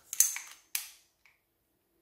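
Two sharp clicks about half a second apart as the stick BB magazine of a Sig Sauer 1911 Max Michel CO2 pistol is pushed back into the grip and latches.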